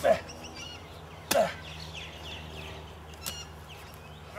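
Shovel blade striking into hard ground three times, each a sharp chop, spaced roughly a second or two apart.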